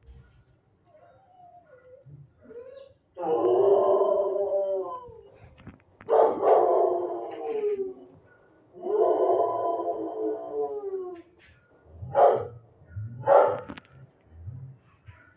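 A dog howling: three long, wavering howls of about two seconds each, then two short, sharp calls near the end.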